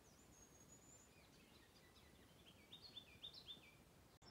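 A songbird singing faintly: a thin, high, held whistle, then a run of about five quick repeated notes a couple of seconds later.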